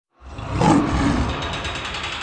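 Lion roar sound effect with a deep rumble, swelling up quickly just after the start and staying loud.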